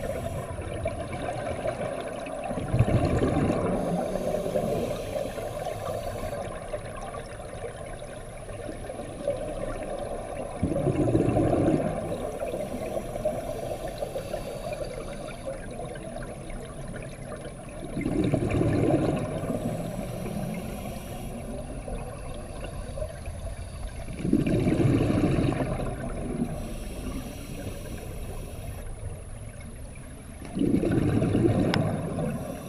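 Open-circuit scuba divers' breathing heard underwater: regulator exhaust bubbles burble out in four bursts, six to eight seconds apart, over a steady dull hiss.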